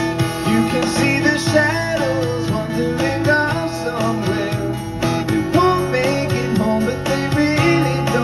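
Live solo performance of a pop-rock song: an acoustic guitar strummed steadily, with a man singing a melody over it.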